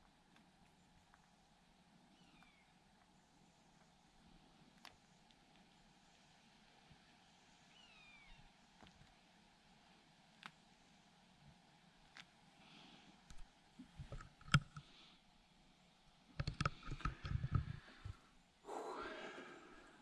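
Quiet ambience with a few single clicks spread several seconds apart, from the playback buttons of a Nikon Z6 II mirrorless camera being pressed, and faint bird chirps in the background. Near the end comes a run of low bumps and rustling as the camera or microphone is handled.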